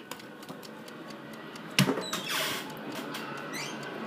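A single sharp knock about two seconds in, followed by a brief rustling noise and a short rising squeak near the end, over quiet room noise.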